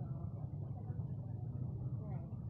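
A steady low rumble with faint, distant voices of an assembled crowd above it.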